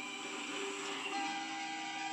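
Background music from a television show, with a few long held notes.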